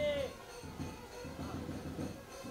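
Background music with a repeating low beat, and a short falling call at the very start.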